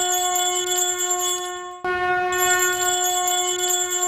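Programme title sting: a long held horn-like tone with small bells jingling high above it. It cuts off and starts over just under two seconds in.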